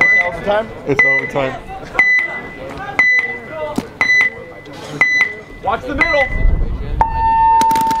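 Electronic game-start timer counting down: seven short, high beeps one second apart, then a longer, lower tone that starts the point.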